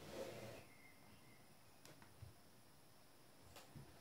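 Near silence, with a faint rustle at the start and a few soft clicks as a tablet is handled in its folio keyboard case.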